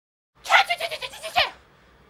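A person's high, wavering cry, about a second long, pulsing quickly and ending in a falling slide, from a film dialogue clip.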